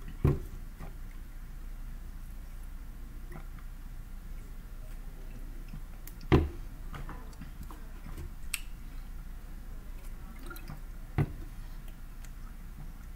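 A plastic drink bottle being handled and knocked against a desk: three dull knocks, the first just after the start, one in the middle and one near the end, with faint ticks and clicks between them.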